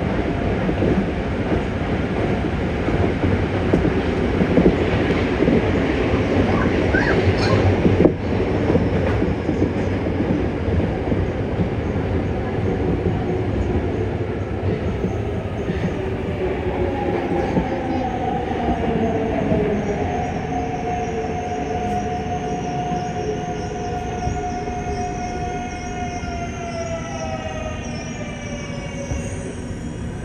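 Yokohama Municipal Subway 3000A-series train running through a tunnel, with a steady rumble of wheels on rail and one sharp clack about a quarter of the way in. From about halfway, the Mitsubishi GTO-VVVF inverter's whine comes in as the train brakes for a station. Its pitch falls, holds steady for a few seconds, then drops again near the end as the train slows.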